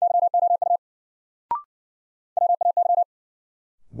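Morse code sent at 60 wpm as a rapid on-off audio tone: first the repeat of the word "you", then about a second and a half in a short rising two-note courtesy beep, then the next word, "way", keyed in the same tone.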